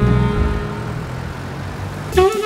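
A fading tail of jazz music gives way to a low, steady vehicle rumble that slowly drops in level.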